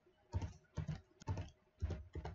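Computer keyboard keys pressed one at a time: four separate keystrokes about half a second apart, entering a number.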